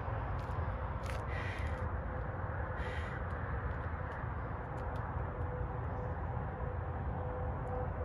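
A couple of short bird calls, around one and three seconds in, over a steady low outdoor rumble.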